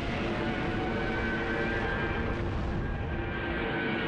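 Steady low rumble with sustained music tones held over it; no distinct single blast stands out.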